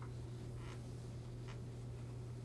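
A few faint clicks, roughly three spaced under a second apart, from a computer being operated while spreadsheet values are entered. A steady low hum runs beneath them.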